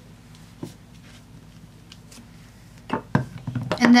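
A few light knocks and clicks of nail-stamping tools being handled on the work surface, bunched together about three seconds in, over a faint steady hum.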